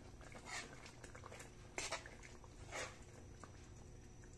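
Thick curry sauce simmering in a wok: faint, with three soft pops of bubbles bursting about a second apart.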